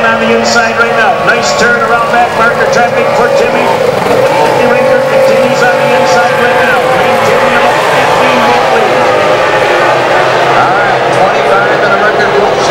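Racing outboard engines of Formula 1 tunnel-hull powerboats running at full speed, several at once. Their pitch rises and falls as the boats pass and swing through the turns.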